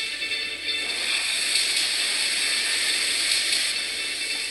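Film trailer score: a sustained, steady passage of music with a bright, hissy shimmer.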